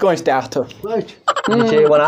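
A man's voice in a loud sing-song wail with a quickly wavering pitch, chanting a repeated phrase; it swells after a short dip about a second and a half in.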